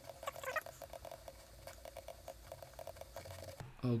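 Computer mouse scroll wheel turning: a fast run of faint small ticks that stops shortly before the end.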